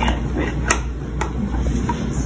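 A few light clicks and knocks from a prosthetic leg's socket, pylon and foot being handled, over a low steady hum.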